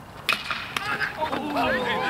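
A sharp crack of a baseball bat hitting the pitched ball, followed within a second by many voices of players and spectators shouting and cheering, growing louder.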